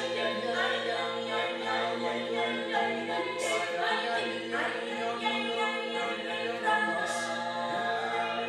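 Six amplified voices singing a cappella, holding one sustained chord and sweeping overtones above it. Two brief hisses cut in, about three and a half seconds in and near the end.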